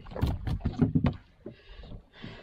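A freshly landed fish flapping on a boat's deck: a quick run of slaps and knocks for about the first second, then quieter.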